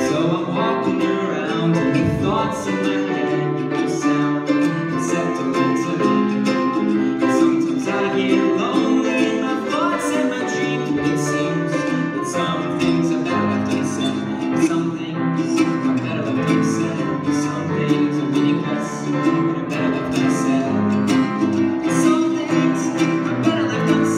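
A grand piano and a strummed ukulele playing a song together, the ukulele strummed in an even rhythm over sustained piano chords.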